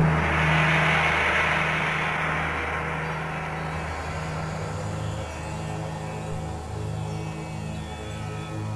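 Ambient soundtrack music: a low, steady drone with slowly pulsing low tones under a bright shimmering wash that is loudest at the start and gradually fades.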